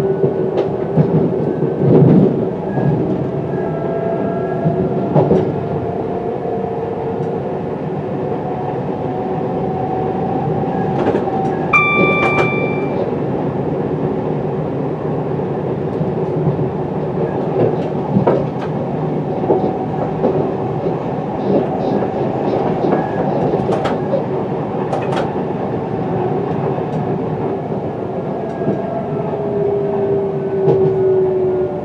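Electric multiple unit heard from its driver's cab as it runs along the line: steady rail and running noise with a traction motor whine that slowly rises and falls, and wheels clicking over rail joints. A short electronic beep sounds about twelve seconds in.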